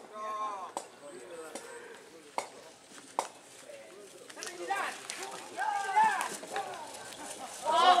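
People's voices calling out in short bursts, with a few sharp knocks scattered through the first half.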